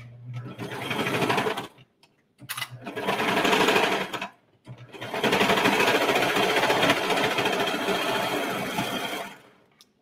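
Serger (overlocker) running in three runs: about two seconds, a short pause, two more seconds, another pause, then about four and a half seconds of steady stitching before stopping near the end. It is re-sewing a seam in sweatshirt knit fabric.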